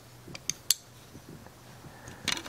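Folding pocket knives being handled: three quick light metal clicks in the first second, the last the sharpest, as the knives knock together.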